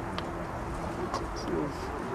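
Outdoor ambience: a steady low rumble of wind on the microphone, with faint voices murmuring at a distance.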